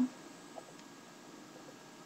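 Quiet room tone: a faint steady hiss, with a soft tick or two about half a second in.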